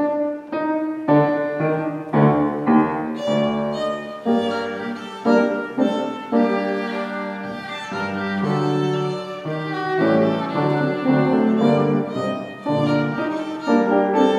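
A child playing a violin solo with piano accompaniment, a classical recital piece starting suddenly right at the beginning and continuing note after note.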